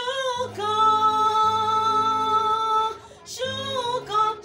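A woman singing a gospel song solo, holding one long steady note for about two and a half seconds before starting a new phrase near the end, over a low instrumental accompaniment.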